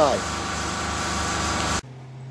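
Steady mechanical running noise, like a shop machine or fan, cutting off abruptly near the end, where only a quieter low hum remains.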